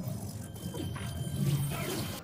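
Low, steady rumbling drone from a film soundtrack's sound effects, with faint high tones held over it.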